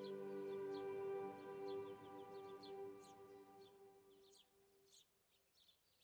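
The last held chord of soft ambient background music fading away over the first few seconds. Faint, scattered bird chirps continue throughout.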